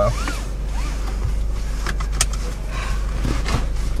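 A stopped car's engine idling, heard as a steady low hum inside the cabin, with a sharp click a little over two seconds in.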